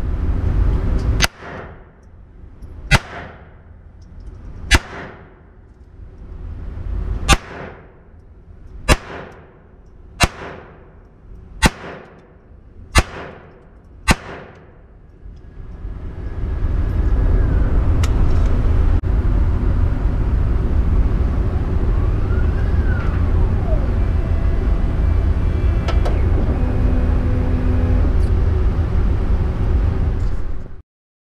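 Nine .22 LR pistol shots from a Ruger Mark IV Tactical, fired singly about one and a half seconds apart, each ringing out with indoor-range echo. From about halfway through, a loud steady low rumble takes over.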